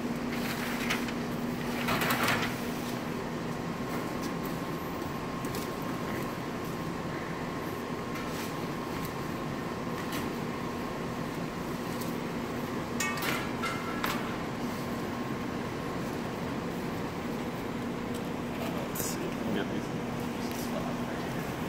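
Rummaging through a canvas bag and handling a sketchbook and loose paper: rustling and a few short handling knocks, about two seconds in, twice around the middle and once near the end, over a steady room hum.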